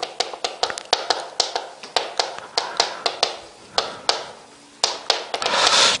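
Chalk tapping and scratching on a chalkboard as characters are written: an irregular run of sharp taps, a few per second.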